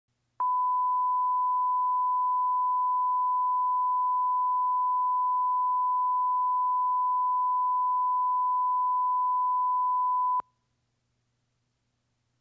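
A steady 1 kHz line-up test tone, the reference tone that goes with colour bars at the head of a programme. It starts abruptly just under half a second in, holds one unchanging pitch for about ten seconds, and cuts off abruptly.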